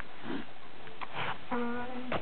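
A person's breathy sniff through the nose about a second in, followed by a short held hum in the last half second.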